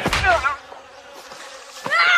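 A person's high, wavering cries of pain while being beaten with a branch. One cry falls away just after the start and another rises near the end.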